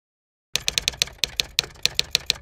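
Typing sound effect: a quick run of sharp typewriter-style key clicks, about seven a second, starting about half a second in.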